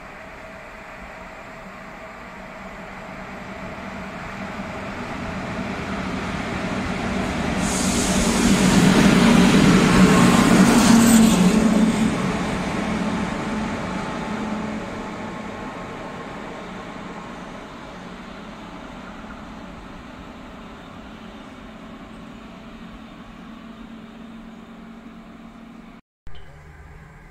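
Locomotive running light through a station: its noise builds over several seconds, is loudest with a rushing hiss for a few seconds about 8 to 12 seconds in as it passes, then fades away down the line.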